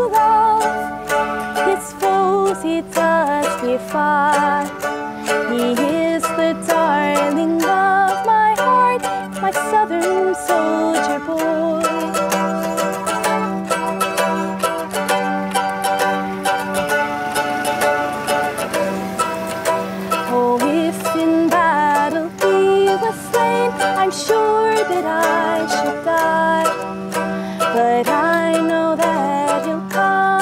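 Mandolin playing an instrumental melody of quick plucked notes over a steady low note, with no singing.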